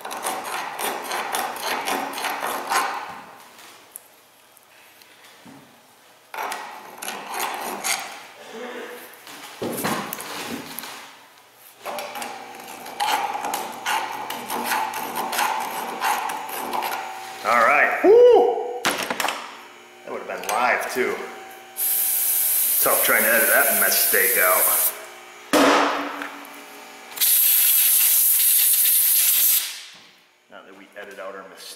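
Steel scraping on the steel driveshaft yoke as burrs are cleaned out of the U-joint bores with a hand tool, in short bouts with small knocks. Near the end come two long, loud hissing blasts of a few seconds each that start and stop abruptly.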